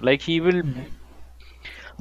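A man's voice says a drawn-out "think" and then stops for a hesitant pause of about a second. In the pause there is only a faint soft noise and a steady low hum.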